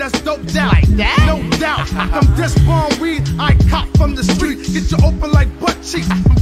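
Hip-hop track: a male rapper's verse over a beat of drum hits and a stepping bass line.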